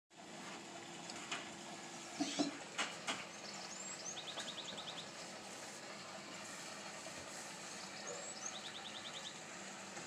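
A small bird singing twice, each phrase a couple of short rising chirps followed by a quick trill of about eight notes. A few sharp knocks come in the first three seconds, the loudest about two and a half seconds in.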